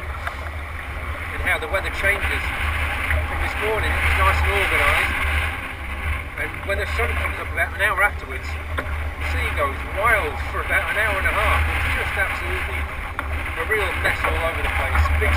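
A man talking over a steady low rumble of wind buffeting the microphone, out on a rough sea.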